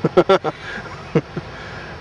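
A man laughing in a few short bursts, then steady outdoor background noise with a couple of faint sounds.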